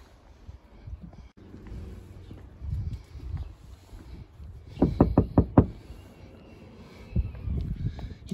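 Knuckles knocking on the side door of a motorhome: a quick run of about six knocks about five seconds in.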